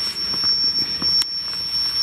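REM pod proximity alarm sounding a steady high-pitched tone, set off by a disturbance of its antenna's field. A faint shuffling and one sharp click about a second in come from beneath the tone.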